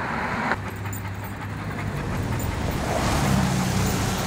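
Road traffic on a wet street: cars and a pickup truck driving past, with engine hum and tyre noise on the wet pavement growing louder and peaking about three seconds in.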